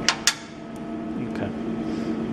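Two sharp clicks in quick succession, then a couple of fainter ticks, over a steady electrical machine hum.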